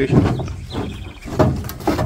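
Thumping and knocking from a steel-framed, wood-sided livestock trailer as a man moves about inside it, with a few sharp knocks, one about a second and a half in and another near the end.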